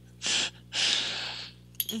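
A person's breathing: a short, sharp breath, then a longer breath that fades away.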